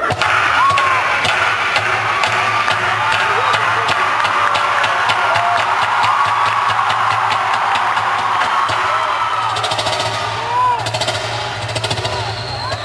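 Live concert sound: loud amplified music with regular percussive hits, mixed with the audience's screams and cheers.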